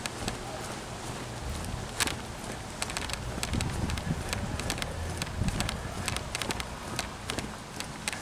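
Steady rumble and hiss of wind and motion on a moving camera's microphone. Many small irregular clicks and taps are scattered through it, with a sharper click about two seconds in.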